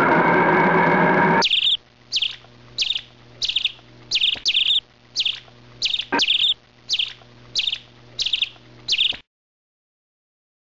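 Repeated short, high bird chirps, about one every two-thirds of a second, some of them doubled, over a faint low hum, stopping abruptly near the end. Before they begin, a loud sustained sound of several steady tones cuts off sharply about a second and a half in.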